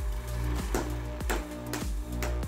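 Background music with sustained chords, over repeated sledgehammer blows on a red-hot sword blade on the anvil, about two to three sharp strikes a second as the strikers take turns.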